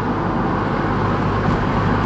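Steady engine hum and road noise heard from inside the cabin of a Honda Civic Si cruising at light throttle.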